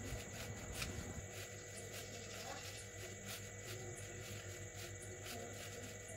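Faint soft scratching of a knife sawing back and forth through a soft chocolate sponge cake, heard as light repeated ticks over a steady low hum and a thin high whine.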